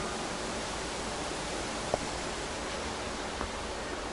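Steady, even hiss of air from the glass dome's climate-control units, with one short faint click about two seconds in.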